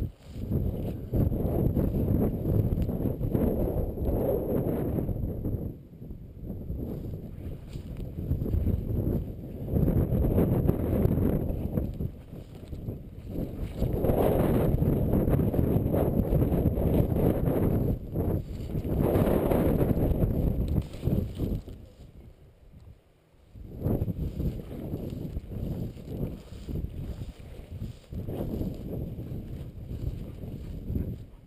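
Wind rumbling on the microphone and the swish of dry tall grass while walking through it, loud and steady, easing off briefly three times.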